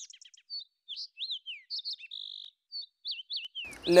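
Birds chirping: a run of short, quick chirps and whistles, many sliding up or down in pitch, with one brief steady whistle about halfway through.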